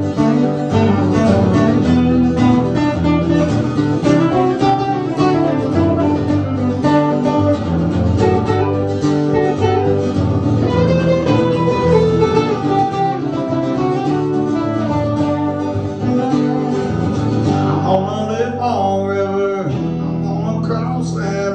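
Acoustic guitars playing an instrumental break in a live country song: strummed chords under a picked lead melody that moves through the break, with no singing.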